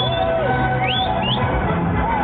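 Loud fairground ride music from the ride's sound system, with two short high rising squeals about a second in.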